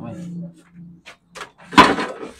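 A few short knocks, then one louder sharp thump near the end, with brief voice sounds around them.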